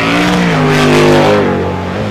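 Jet sprint boat's Whipple-supercharged Chevrolet racing engine at high revs, its note dipping and rising as the boat is thrown through the turns, over the hiss of the jet's spray.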